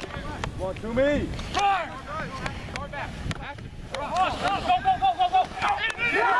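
Rugby players and sideline onlookers shouting calls across the field, several voices overlapping, with no clear words. The shouting gets busier and louder in the last couple of seconds as a maul drives. Wind rumbles on the microphone.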